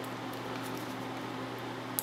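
Steady electrical hum and faint hiss, over which a few faint small ticks and one sharper click near the end come from a thin sheet-metal shim probe being worked inside a cheap combination luggage lock, feeling for the gate of a combination wheel.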